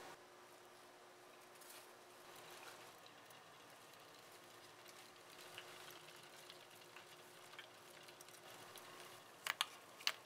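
Near silence: the faint steady hum of a magnetic stirrer spinning a stir bar in a beaker. Two sharp clicks come near the end.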